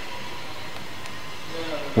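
Steady background noise: an even hiss of room tone with a faint steady tone, and no distinct events.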